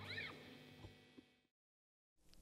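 The dying tail of a live rock band's final note, with a brief faint high squeal that rises and falls just at the start. The sound then fades out to silence.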